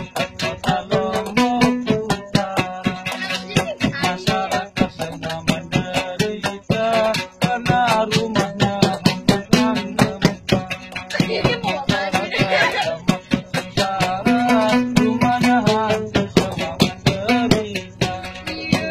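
Sasak gambus lute plucked in quick, steady strokes, with a man singing a wavering folk melody over it.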